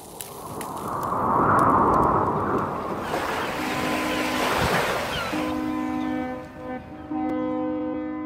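A rushing swell like surf builds over the first few seconds. Then a deep, steady horn like a ship's horn sounds in three long blasts, the last running on to the end.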